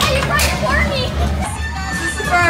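Children's excited voices and short cries over loud party music with a steady bass beat.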